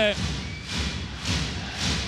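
Crowd in a packed sports hall clapping and cheering, a rising din, with low thuds in it.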